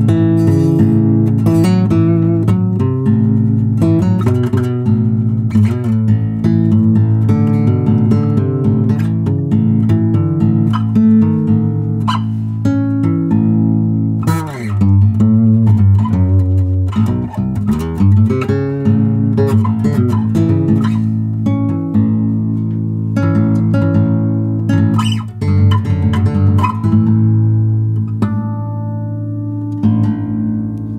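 Epiphone El Capitan J-200 acoustic bass guitar played fingerstyle unplugged, its natural acoustic sound picked up by a studio microphone with the onboard pickup switched off: a continuous bass line of plucked notes.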